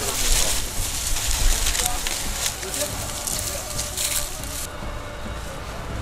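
Dry maize stalks and leaves rustling and crackling as people push through them, with voices in the background. The rustling stops suddenly about three-quarters of the way in, leaving a quieter low rumble.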